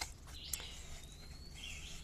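Faint bird call: a thin whistled note held for about a second, with softer chirps before and after it. A single light tap sounds about half a second in.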